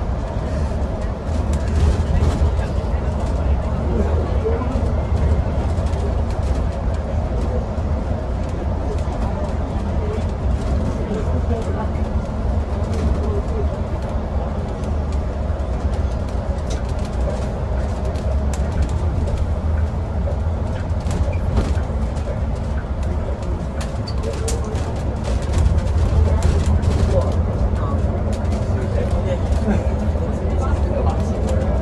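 Cabin noise inside a battery-electric Alexander Dennis Enviro500EV double-decker bus cruising through a road tunnel: a steady low road rumble with light rattles, a little louder near the end.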